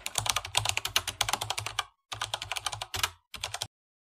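Keyboard typing sound effect: runs of rapid key clicks with short breaks between them, matching credit text being typed out on screen.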